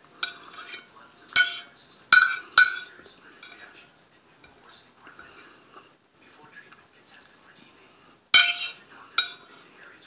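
Sharp clinks of cutlery against a plate, four in the first three seconds and two more near the end, each with a brief ring.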